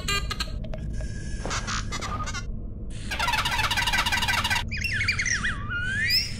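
Electronic chirps and squeals of a Star Wars mouse droid: a run of fast chattering beeps about three seconds in, then squeaky warbles gliding up and down near the end, over a steady low hum.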